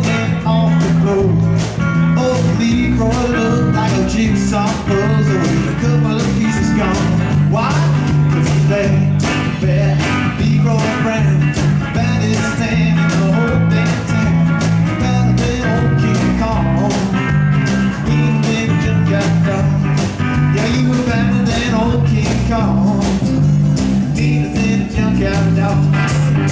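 Live band of acoustic guitar, electric guitar, bass guitar and drum kit playing a blues-rock shuffle with a steady beat.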